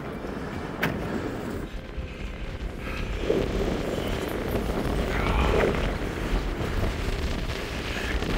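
Strong wind buffeting the camera microphone, a low rumbling rush that gusts louder from about three seconds in.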